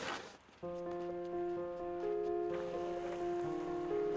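Background music that begins just after a short silence: soft held chords whose notes change every second or so.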